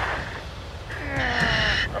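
Fast white water rushing. About a second in, a diver strains and groans over his dive radio while fighting the current.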